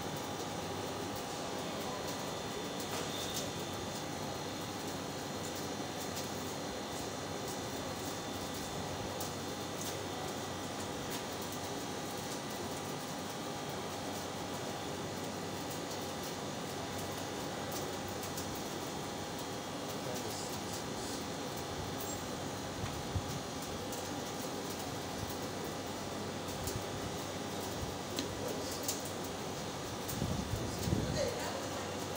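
Steady background hum with a faint constant whine, and a few faint clicks in the second half.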